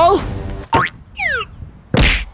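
A cartoon 'boing' sound effect: a short rising glide, then a quick falling one, as a basketball is tossed up. A thump lands at the very end.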